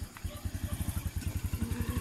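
A small engine running steadily, with a rapid even low beat.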